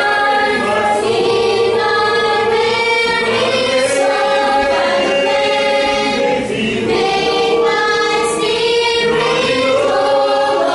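Small mixed choir of young men and women singing a religious song together a cappella, in long held notes, with a short breath pause a little past the middle.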